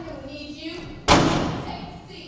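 Folding table set down hard on a stage floor: one loud thump about halfway through that dies away over most of a second.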